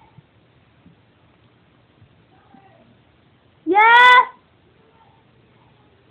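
A single loud shouted call in a person's voice, rising in pitch and lasting about half a second, a little under four seconds in.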